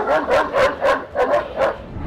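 A large Šarplaninac shepherd dog barking in a quick, even run of short barks, about three a second.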